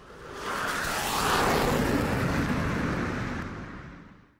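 Cinematic whoosh-and-rumble sound effect for an animated title, swelling about half a second in, holding, then fading away near the end.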